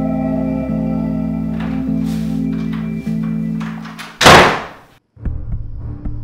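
Film score: a sustained organ-like drone chord, broken about four seconds in by a loud noisy hit that fades within a second. After a brief silence come low, uneven rumbling strokes.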